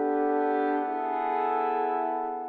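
A section of horns holding a sustained chord, heard on its own; the chord moves to a new voicing about a second in and then fades. It is a horn line added to lift the passage with a sense of positivity.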